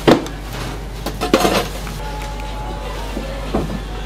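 Kitchen utensils clattering against dishes at a food stall. There is a sharp clack at the start, a cluster of clinks about a second and a half in, and a smaller knock near the end, all over a steady low hum.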